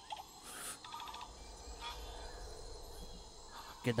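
Quiet opening of a film trailer's soundtrack, heard through playback: a low rumble that swells in the middle, with a few faint high calls like forest ambience.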